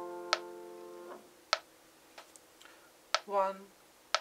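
A held piano chord fades and is released about a second in, while a metronome clicks about every 1.2 seconds. After a pause it resets to one click a second, and near the end a voice counts in "one" for the faster tempo.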